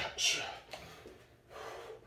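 Sharp hissing exhalations through the teeth, a boxer breathing out hard with each punch while shadowboxing: two quick ones at the start, then softer breathing.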